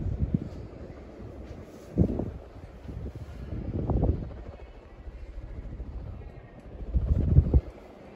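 Air from a Modern Fan Company Ball ceiling fan running on medium, buffeting the microphone held close beneath the blades in several low gusts.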